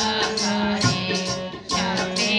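Kirtan accompaniment: harmonium reeds holding steady chords under tabla strokes, with a brief drop in loudness about three-quarters of the way through before the drum comes back in.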